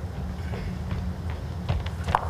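Steady low hum of an indoor arena's background noise, with a few faint clicks near the end.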